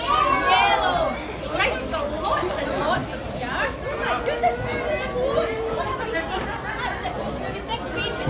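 Chatter of many children and adults talking at once, with no single voice standing out for long.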